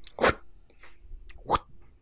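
Short throaty mouth sounds from a person, two brief bursts about a second apart, like hawking loogies.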